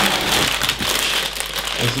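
Plastic bags of Lego parts being rummaged through and sorted, crinkling steadily with many small clicks.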